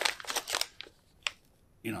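Sealed foil-laminate food pouches (Survival Tabs packets) crinkling as they are handled and pulled apart: a quick run of crackles in the first half-second, then a single crackle past the middle.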